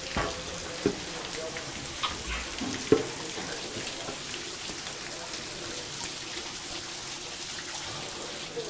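Water spraying from leaking plumbing pipes and splashing onto a flooded floor, a steady hiss. A few sharp knocks come in the first three seconds.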